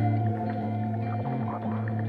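Music: slow, sustained tones held over a steady low drone, the notes changing in steps.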